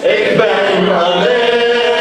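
A man's solo voice chanting a Shia mourning lament (rouwzang) into a microphone, in long, slowly wavering melodic lines.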